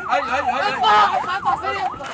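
Emergency vehicle siren sounding in a fast yelp, its pitch sweeping up and down about four times a second.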